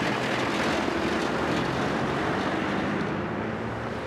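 Motor vehicle traffic noise, a steady rushing sound that fades in the highs near the end, like a vehicle passing and moving away.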